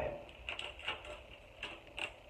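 Packet of teeth whitening strips being torn open and handled: about four short, faint crinkles and crackles.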